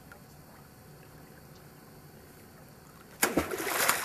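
A spear thrust into shallow creek water: a sudden loud splash about three seconds in, after a faint steady trickle of the stream.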